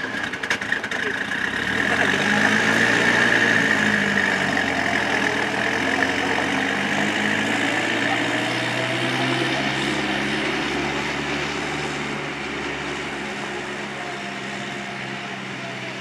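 Engine of a small four-wheeled military armoured car revving up as it pulls away about two seconds in, then running steadily and fading as it drives off over gravel.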